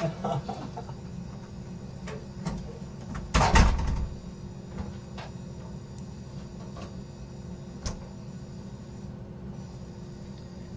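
A steady low background hum with a few soft clicks, and one louder brief knock or bump a little over three seconds in.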